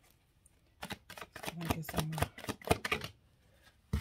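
Tarot cards being shuffled by hand: a quick run of sharp card clicks and slaps lasting about two seconds, starting about a second in.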